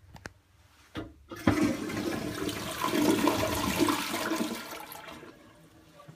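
Toilet flushing: a couple of small clicks, then about a second and a half in the rush of water starts and fades away over the next four seconds.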